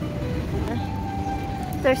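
Steady low rumble of outdoor ambience with faint background music; a single held note comes in under a second in and lasts about a second.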